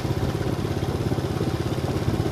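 Small motorcycle engine running steadily at low speed, with a fast even pulse low in pitch, heard from the bike as it is ridden along.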